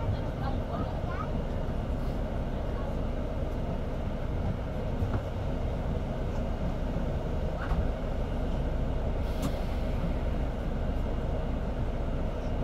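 Steady low rumble of idling city bus engines, with faint voices and a single sharp click about nine and a half seconds in.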